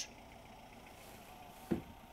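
Faint steady background ambience with one short, low thump near the end.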